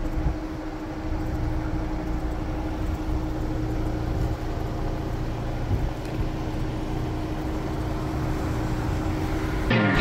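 Ford Bronco engine running as the SUV crawls slowly down a sandy dirt trail, a steady rumble with a constant hum. Near the end it cuts off and loud music starts suddenly.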